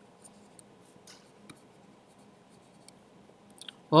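Faint taps and scratches of a stylus writing on a tablet, with a few light ticks scattered through, over a low room hum.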